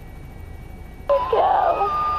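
A baby lets out one long cry about a second in, over the steady low hum of a helicopter cabin in flight.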